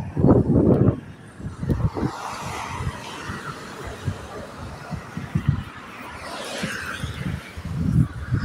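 Cars going by on a street, their tyre and engine noise swelling and fading as each passes. Low thumps and rumbles on the phone's microphone run throughout and are loudest in the first second.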